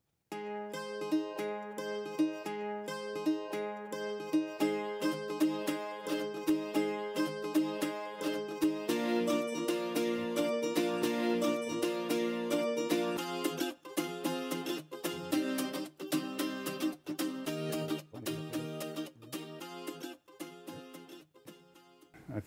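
Background music: a quick, rhythmic piece on a plucked string instrument like a mandolin, with a chord change about nine seconds in, thinning out after about thirteen seconds.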